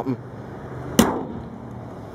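The hood of a 2011 Ford Escape slammed shut: a single sharp bang about a second in, with a brief ring after it.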